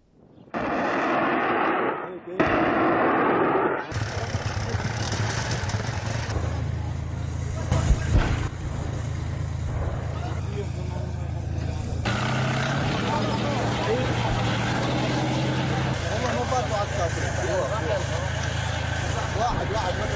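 Field recording of a heavy military vehicle's engine running with a steady low drone, and a single loud bang about eight seconds in. A short rushing noise comes before the engine sound begins.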